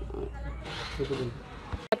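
A pause between interview answers: a low rumble with faint voices in the background, then a single sharp click near the end where the recording is cut.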